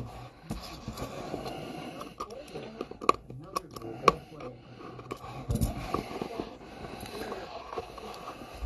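A utility knife cutting the seal stickers on a cardboard trading-card hobby box: quiet scraping with two sharp clicks about three and four seconds in, then the box lid starting to lift near the end.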